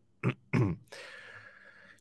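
A person's short laugh over a video-call microphone: two brief voiced bursts in the first second, followed by faint background hiss.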